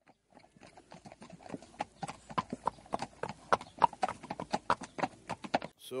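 A fast, uneven run of sharp clop-like knocks, about five a second, starting faint and growing louder before cutting off near the end.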